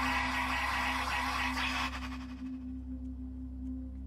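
A low, droning music bed with a steady hum, with a dense hissing noise from a car radio's speaker over it that fades out about two seconds in.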